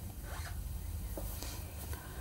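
Faint background hum with a few soft, brief rustles and light clicks.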